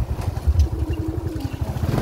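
Small motorcycle's engine running steadily while riding along a cobblestone street, a rapid low pulsing from the engine with road rumble.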